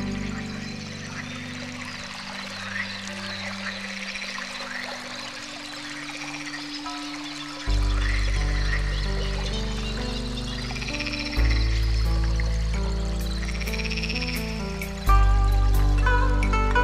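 Calm background music of long held chords, with deep bass notes coming in about eight, eleven and fifteen seconds in, and short chirping, croak-like calls woven through it.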